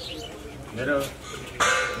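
A man giving a speech in Nepali into a microphone, with birds calling in the background.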